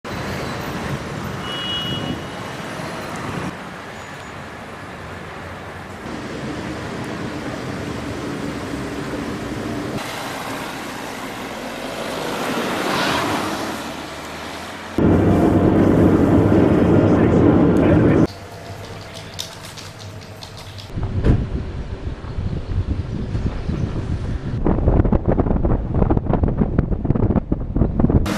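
Police cars driving at night: engine and road noise that changes abruptly several times. There is a swell as a car passes about halfway through, a loud steady stretch soon after, and rough gusty noise near the end.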